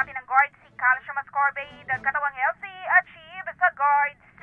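Speech only: a woman reporting over a telephone line, her voice thin and narrow.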